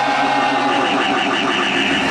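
Hardstyle breakdown: a sustained, buzzing synthesizer chord held steady, with a fast pulsing layer riding on top of it.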